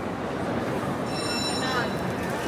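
Crowd chatter in a large hall, with a brief high-pitched squeal of train wheels or brakes starting about a second in and lasting under a second.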